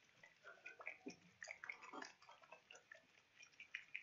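Faint, irregular small clicks and light liquid sloshing as a bottle of acrylic white ink is shaken and handled.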